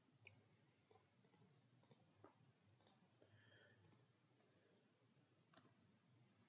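Faint, scattered clicks of a computer keyboard and mouse, about ten over a few seconds, in near silence.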